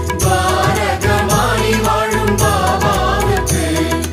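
Indian devotional music: a voice singing a chant-like melody over a steady low drone, with regular sharp percussion strikes.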